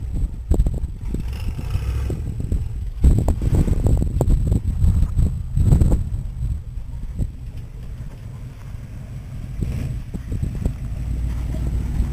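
Wind buffeting the microphone over the faint, distant engine of a pickup truck backing down a steep sand hill.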